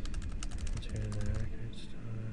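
Typing on a computer keyboard: a rapid run of keystrokes as a short phrase is typed.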